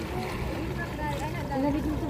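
Indistinct voices talking over a steady low rumble of wind and sea water lapping around rocks.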